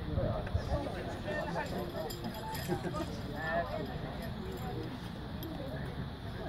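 Indistinct voices of several people talking nearby, with no clear words.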